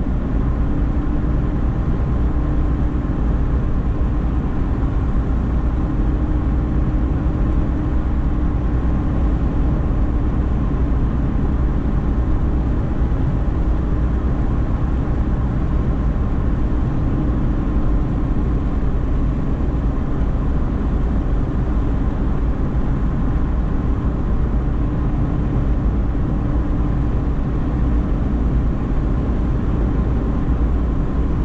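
A car cruising at steady speed on a paved road: an even drone of engine and tyre noise with a faint steady hum, unchanging throughout.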